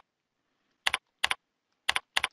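Computer keyboard keystrokes typing a date: about four separate key presses spaced roughly half a second apart, each a short, sharp double click.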